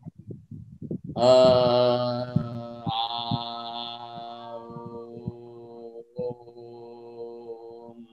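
A man's voice chanting a mantra in long held tones at one steady low pitch, in three sustained stretches with brief breaks about three and six seconds in, the vowel darkening as it goes. The chant is voiced on the out-breath after a slow in-breath, heard faintly in the first second.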